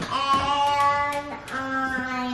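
A young child's voice calling out in a sing-song, two long held notes, the second a little lower and starting about one and a half seconds in.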